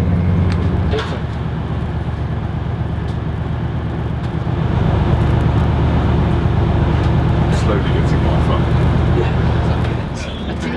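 Voyager diesel train in motion: a steady low engine drone and running rumble. The tone shifts about a second in, and the rumble grows louder and fuller about four and a half seconds in.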